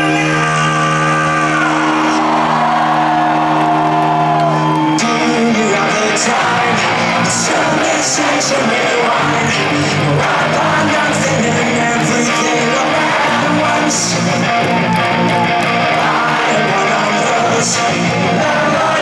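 Live rock concert in a large hall: an electric guitar chord is held and rings out with a voice gliding over it. About five seconds in the held chord stops, and the crowd cheers and yells over the music.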